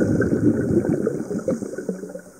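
Bubbling and gurgling water recorded underwater, a dense crackle of bubbles that thins out near the end.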